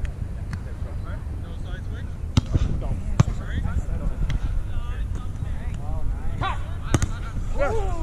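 A volleyball being hit by players' hands and arms during a rally: sharp slaps a couple of seconds in, again about a second later, and two more near the end. Under them runs a steady wind rumble on the microphone, and distant players shout, one long falling call near the end.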